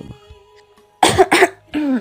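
A person coughing twice in quick succession about a second in, followed by a short voiced sound falling in pitch, over soft background music.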